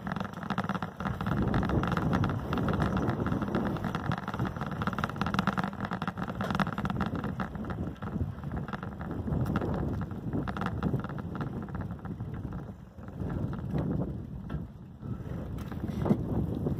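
Wind rushing over the microphone and tyre noise from the road while riding along at speed, with frequent small knocks and rattles; it eases briefly about 13 seconds in.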